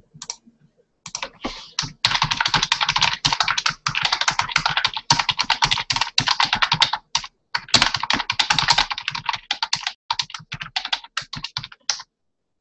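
Typing on a computer keyboard: a few scattered keystrokes, then long runs of fast typing with a short break a little past the middle, thinning to separate key presses near the end.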